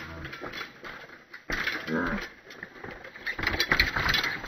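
Mountain bike's freewheel hub clicking and its tyres knocking over rock as it coasts down a stone trail, the rapid clicks growing louder near the end as the bike passes close by. A brief voice is heard about halfway through.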